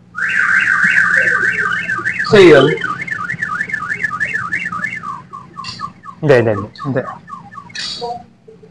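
An electronic alarm siren sounds loudly. It begins with a fast warbling tone, slows to a wail that swings up and down about twice a second, and ends with a run of short falling chirps. Shouted voices cut in twice.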